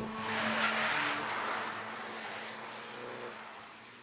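Mini Coupe JCW with its turbocharged 1.6-litre engine driving past on a race track at speed, with engine and tyre noise. The sound peaks about a second in, then fades away steadily as the car moves off.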